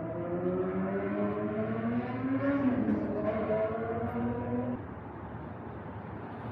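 A passing motor vehicle's engine with a pitched hum that rises steadily, drops once about two and a half seconds in, then holds until it fades out near the five-second mark, over steady street noise.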